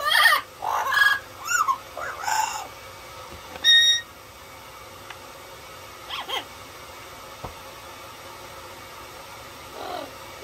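Yellow-headed Amazon parrot calling: a quick run of squawking calls that bend up and down in pitch over the first couple of seconds, then one loud, steady whistle at about four seconds in, and a short call a couple of seconds later.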